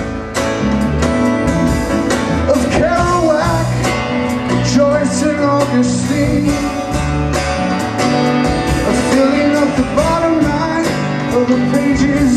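Live rock band playing an instrumental passage: an electric guitar carries a lead line with bent notes over acoustic guitar, bass and a steady drum beat.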